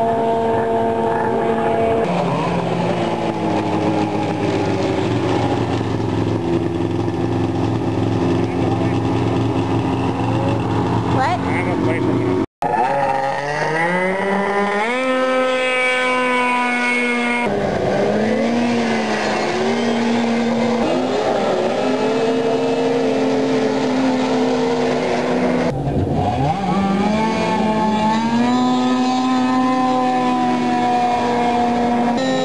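Snowmobile engines running hard, their pitch climbing steeply as a sled accelerates and dipping and rising again as sleds pass. The sound cuts out for an instant about twelve seconds in.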